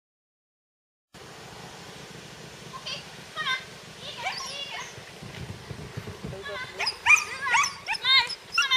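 A dog barks and yips in short high-pitched calls during an agility run. The barks start about three seconds in and come more often and louder near the end, over faint outdoor background noise.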